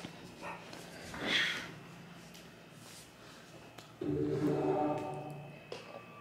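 Sound from a newly set-up smart TV's speakers: a pitched sound with steady overtones cuts in suddenly about four seconds in and holds for about a second and a half. A short rustle comes a little after the first second.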